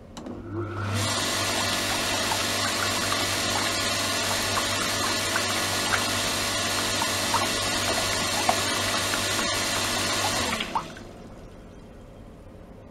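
Electric circulation pump of a degassing and microbubble-generating system starting up with a steady low motor hum, driving water out of a hose into a plastic tub with a loud rushing, bubbling splash and small pops. The pump shuts off abruptly a little before the end.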